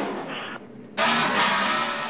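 NASCAR Cup stock car's V8 engine heard through the in-car camera's microphone. After a brief muffled lull it comes in suddenly about a second in, as a loud, dense, steady roar.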